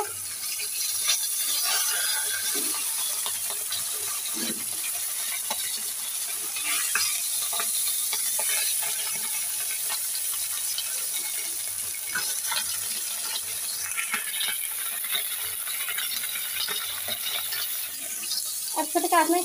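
A fish head frying in hot oil in a blackened iron wok, sizzling steadily, while a metal spatula scrapes and clinks against the pan as it turns the fish.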